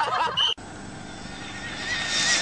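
Shrill, whooping laughter that breaks off suddenly about a quarter of the way in. Then comes a steady hiss of wind and road noise with a faint, slightly rising whine from a motorcycle as it nears.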